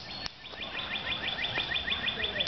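A bird singing a rapid trill of short repeated chirps, about seven a second, starting about half a second in.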